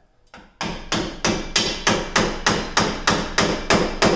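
Hammer blows on the steel front wheel hub of a GMC Yukon, struck at the bearing hub during its replacement. About a dozen sharp, ringing strikes come evenly, roughly three a second, starting about half a second in.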